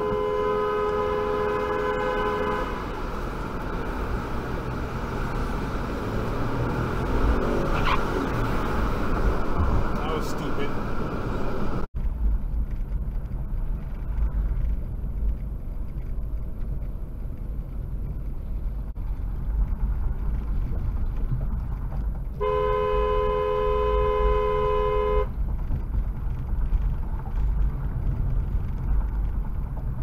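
A two-tone car horn is held for about two and a half seconds at the start and again for about three seconds later on. Between the blasts there is steady road rumble, heard from inside a moving car.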